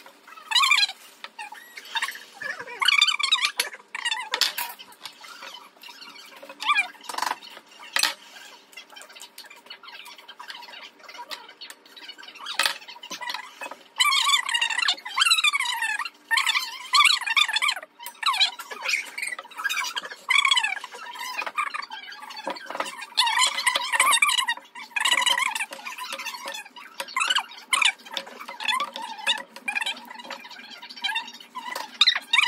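Bursts of bird-like chirps and squeaky calls, many sliding down in pitch, coming in clusters, with a few sharp clicks from a knife working through green plantains.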